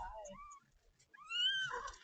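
Newborn kittens, eyes not yet open, mewing in thin high calls: two short mews at the start, then a longer rising-and-falling mew just past a second in.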